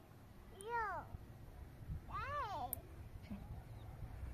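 A cat meowing twice, each call about half a second long, rising and then falling in pitch.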